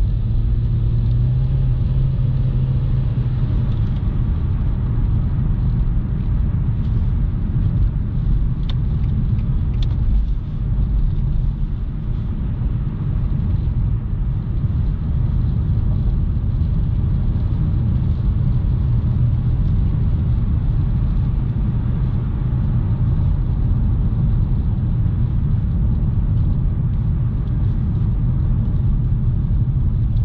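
Cabin noise of a 2012 Nissan Juke with the 1.6-litre four-cylinder and automatic gearbox being driven: a steady low engine and road rumble.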